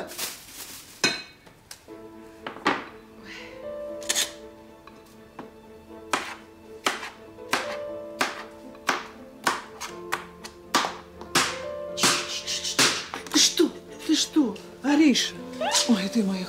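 Knife chopping vegetables on a cutting board: irregular sharp knocks, one or two a second, coming faster in the second half. Soft sustained music plays underneath, and a voice comes in near the end.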